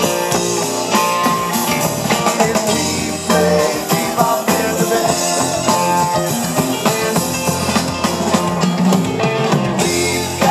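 Live rock band playing, with electric guitar, bass, keyboards and drums, recorded from within the audience.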